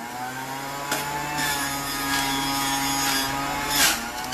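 Electric vertical juicer running steadily while a green apple is pressed down its feed chute with the pusher and ground up. There is a short click about a second in and a louder burst near the end.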